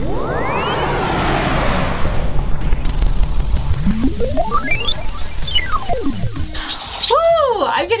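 Breath blown hard through drinking straws onto paper-cup spinners, a loud rushing air noise, strongest in the first half. Over it a tone sweeps upward at the very start, and another tone glides up very high and back down about halfway through.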